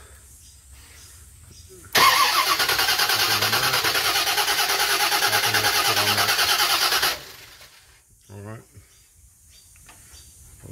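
Starter motor cranking a truck's engine in a steady pulsing churn for about five seconds, then cutting off abruptly without the engine catching. The engine will not fire because the newly fitted Holley HyperSpark distributor gives no spark when the engine is turned by the starter.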